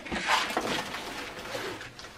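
Rustling and scraping of a soft suitcase and the items in its pocket being handled, a scratchy noise lasting most of the two seconds.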